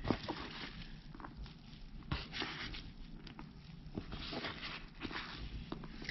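A hand scooping and pushing damp worm castings and paper bedding across a plastic bin: soft rustling and scraping, with a few light clicks.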